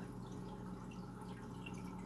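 Faint dripping and trickling of circulating aquarium water, with small scattered ticks over a low steady hum from the tank equipment.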